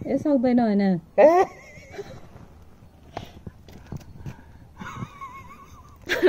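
A person's drawn-out, quavering vocal cry falling in pitch, then a short rising cry about a second in; near the end a high, wavering tone is heard.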